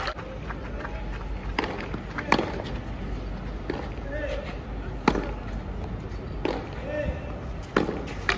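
Tennis ball struck back and forth on a clay court in a practice rally: a string of sharp racquet hits, roughly one every second and a half.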